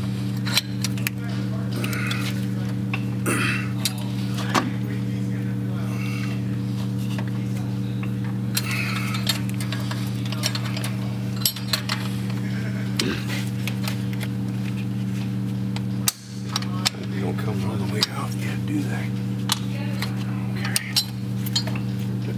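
Scattered light metal clinks and taps as the rear axle retainer plate and its bolts are worked into place by hand. A steady low hum runs underneath throughout.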